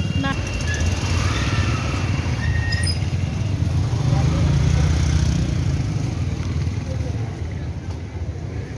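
Low, steady rumble of a motor vehicle engine running close by, with faint voices underneath.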